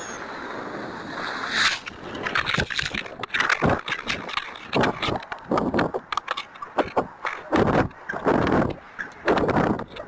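Wind buffeting a small onboard rocket camera's microphone as the model rocket tips over at its peak and starts down. A steady rushing hiss gives way, about a second and a half in, to irregular loud gusts.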